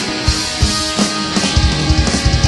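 Loud rock music with drums; a fast, steady kick-drum pattern comes in about one and a half seconds in.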